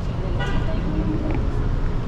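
Road traffic from cars in the adjacent mall driveway, a steady low rumble, with a brief tone about half a second in and faint voices in the background.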